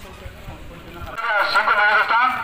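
Low background chatter and noise, then about a second in a loud man's voice, thin-sounding with little bass.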